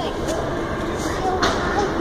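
Steady running noise of a Schindler escalator being ridden upward, with faint voices in the background and a few light clicks.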